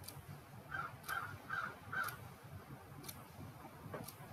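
A crow cawing four times in quick succession, the caws about half a second apart. A faint regular tick about once a second sounds underneath.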